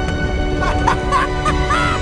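A cartoon man's high-pitched, gleeful giggles and squeals of delight, several short wavering cries in the second half, over a steady orchestral film score.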